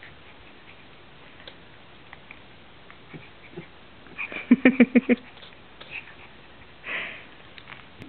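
Shih-tzu puppy sniffing and scuffling at a slipper on carpet as it tugs at it. About halfway through comes a quick run of about six short voiced pulses, the loudest sound, and near the end a brief breathy burst.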